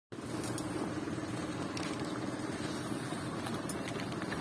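Steady rumble and road noise of a sidecar rolling along a concrete street, heard through a phone carried in a sling bag.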